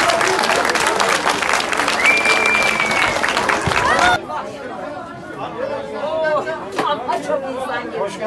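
Street crowd clapping and calling out together, dense applause under raised voices. About four seconds in it cuts off abruptly to quieter talk among a few people in a small shop.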